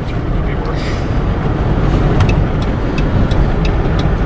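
Steady road and engine rumble heard inside a moving car's cabin. From about halfway in, light ticks come about three a second.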